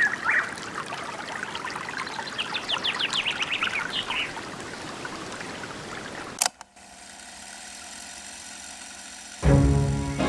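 Trickling, pouring water ambience with a run of quick, high chirps in the middle, cut off abruptly by a click about six and a half seconds in. A soft steady held tone follows, and then the song's music comes in loudly just before the end.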